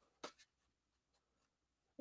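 Near silence, broken once about a quarter of a second in by a brief, soft sound of paper being handled.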